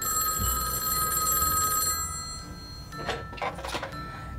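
A pink desk telephone ringing: one ring lasting about two seconds. Near the end comes a short clatter as the handset is picked up.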